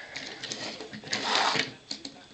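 A plastic Transformers toy jet handled and slid across a wooden tabletop, with a scraping rustle and a few small clicks. The scraping is loudest in the second half.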